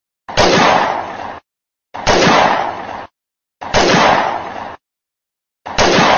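A gunshot sound effect edited onto the picture: the same loud bang with a ringing tail of about a second plays four times, about every two seconds, with dead silence between.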